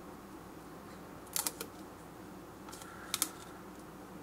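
Quiet room with a few soft clicks and ticks of fingers handling and peeling a paper decal strip: a pair of clicks about a second and a half in, and another near the end.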